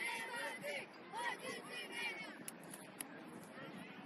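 Several high-pitched voices shouting and cheering across an open soccer field, dying down after about two seconds, with two sharp knocks about half a second apart near the middle.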